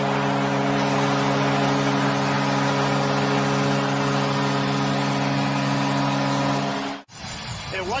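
Hockey arena goal horn sounding a steady multi-note chord over a cheering crowd, signalling a home-team goal. It cuts off abruptly about seven seconds in.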